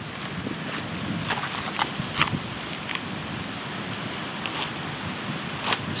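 Wet bark being scraped and pulled off a fallen pine with a large steel knife blade and by hand: a few irregular short scratchy crackles over steady wind noise on the microphone.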